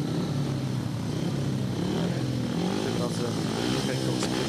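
Several speedway motorcycles, single-cylinder methanol-fuelled racing engines, running at the starting line with a steady drone whose pitch rises and falls.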